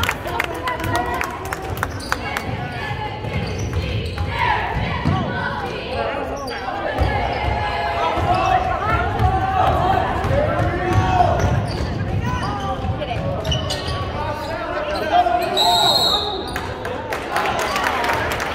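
A basketball dribbled on a hardwood gym floor, with players' and spectators' voices echoing in the hall. A referee's whistle blows briefly near the end.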